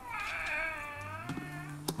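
Electronic baby doll's recorded crying: one long wail that falls slightly in pitch and cuts off near the end.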